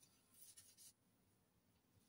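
Faint, brief scrape of a piece of mount card dragged through oil paint on an inking plate, lasting about half a second.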